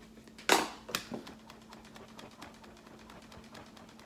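Pump-spray bottle of makeup setting spray spritzing: a short hiss about half a second in, the loudest sound, and a smaller one about a second in, followed by faint handling clicks.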